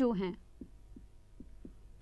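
A woman says a couple of words, then a marker writes on a whiteboard with a few faint, soft ticks over a low steady hum.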